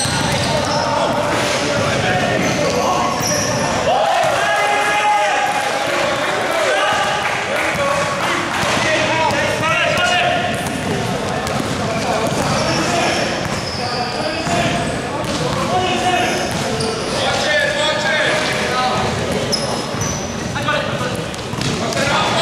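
Basketball being dribbled on a hard indoor court, with repeated bounces, short high-pitched sneaker squeaks and players' indistinct calls echoing in a large sports hall.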